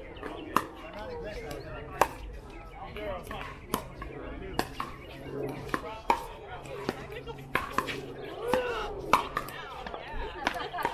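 Pickleball rally: about a dozen sharp pops of paddles hitting the hard plastic ball, coming at irregular intervals of half a second to a second and a half, over background voices.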